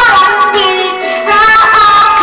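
A song: a high voice singing held notes with vibrato, over a plucked-string accompaniment.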